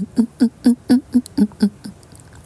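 A young woman laughing: a run of about eight short, evenly paced giggles, roughly four a second, that fade out near the end.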